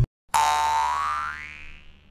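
Cartoon boing sound effect: one tone that glides upward in pitch and fades out over about a second and a half, starting just after the intro music cuts off.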